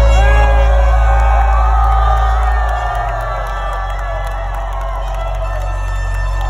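Live rock band playing through a stadium PA, heard from inside the crowd, with a heavy bass. Many fans are cheering and shouting over it. The bass drops in level about three seconds in.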